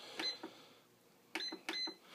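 Treadmill control console beeping as its keypad buttons are pressed: a single short high beep, then a few more in quick succession in the second half.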